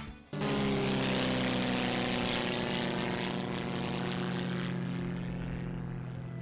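Propeller airplane engine drone, a steady hum with a rushing hiss, coming in suddenly about a third of a second in; the hiss fades away near the end while the hum holds.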